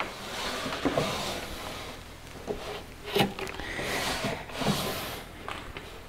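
A hand-dovetailed wooden drawer slid in and out of its cabinet opening, wood rubbing on wood in several swells with a few light knocks. It is a snug test fit, the drawer rubbing wherever it is still tight.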